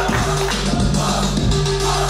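Music playing, with a steady low bass line.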